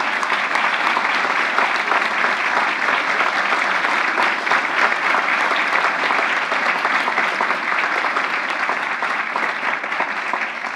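A large audience applauding, many hands clapping in a dense, steady patter.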